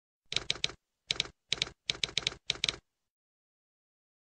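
Typewriter typing sound effect: five quick runs of sharp keystrokes, two to four clicks each, which stop just under three seconds in.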